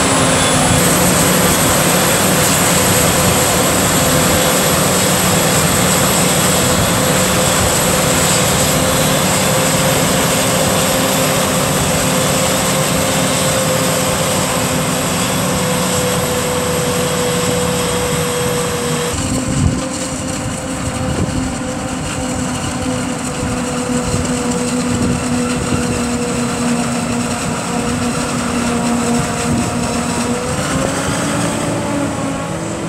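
A Claas Jaguar 950 forage harvester runs steadily while chopping maize. Its machine drone carries a constant high whine. About two-thirds of the way in, the sound changes abruptly and a tractor's engine comes to the fore as the tractor and trailer draw near.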